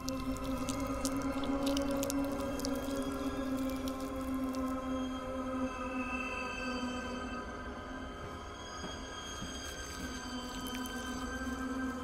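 Eerie, sustained drone from a horror film's score: many held tones ringing steadily together, with a few faint clicks in the first seconds.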